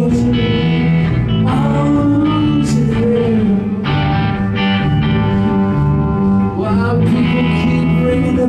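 A live rock band playing, electric guitars to the fore, at a loud, steady level.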